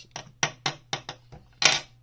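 A basalt stone tool tapped about six times against a hard surface, giving short, chimey ringing clicks; the last tap, near the end, is the loudest. The ring shows a dense, ceramic-like stone, which the owner takes for the perfect material for a smooth, sharp tool.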